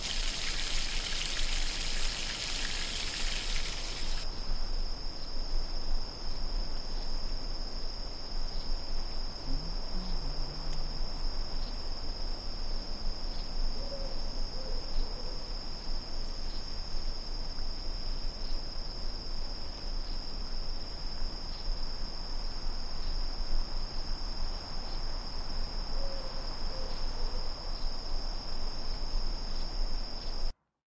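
Insects chirping in a steady, unbroken high chorus. A broad hiss covers it for the first four seconds, then cuts off.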